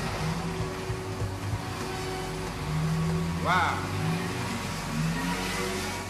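City street traffic, cars running and accelerating, with a short voice-like sound about halfway through.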